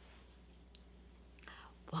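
Quiet room tone with a steady low hum and a single faint tick about halfway through, before a woman's voice starts speaking at the very end.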